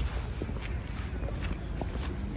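Footsteps on a brick-paved path: a series of light, irregular steps.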